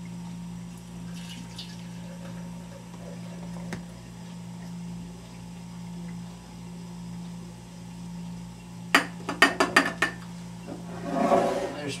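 A steady low hum, then a quick run of about six sharp clicks and knocks of hard objects about nine seconds in.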